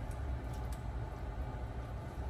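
Steady low rumble with a couple of faint clicks as a ladle dips into a pot of hot pasta water.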